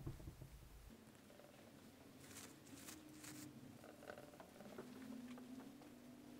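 Near silence with faint soft swishes and scrapes of a brush mixing oil paint on a palette, a few of them between about two and three and a half seconds in.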